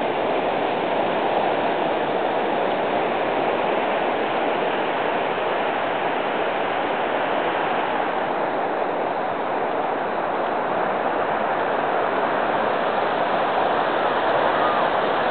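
Ocean surf breaking, a steady, even rush of noise with no distinct events.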